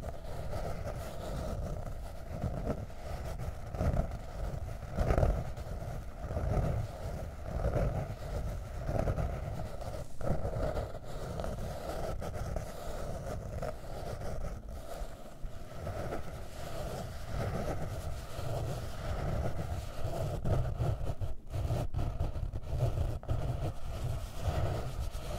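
Long fingernails scratching over a hard notebook cover, close-miked: a continuous run of uneven rasping strokes, one louder about five seconds in.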